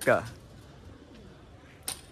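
Pigeons cooing faintly, with a sharp click near the end.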